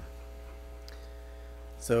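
Steady low electrical mains hum on the meeting-room audio feed during a pause, with a man starting to speak near the end.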